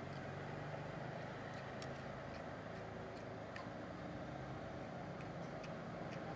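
Steady low drone of roadside traffic, with a few faint sharp clicks of a metal spoon against a plate.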